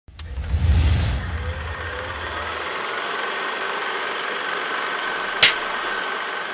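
Logo intro sound effects: a deep boom at the start, then a steady whirring noise with a faint high tone, and a single sharp clap about five and a half seconds in.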